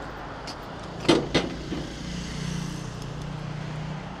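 Road traffic passing on the bridge beside the rider, with a vehicle engine's steady low hum in the second half. Two sharp knocks come about a second in, a quarter second apart.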